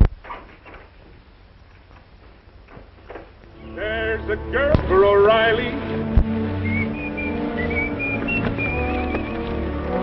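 A sharp knock at the very start, then a few seconds of near quiet with faint clicks. About three and a half seconds in, film soundtrack music and voices come in loudly, with a high wavering melody line from about seven seconds.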